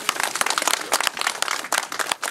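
A small group applauding: many quick, uneven hand claps.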